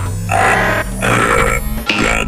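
Two strained, grunting vocal bursts from a cartoon robot character, over background music.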